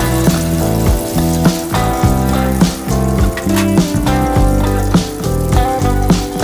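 Background music with a steady beat, over the sizzle of potato pinwheels deep-frying in hot oil.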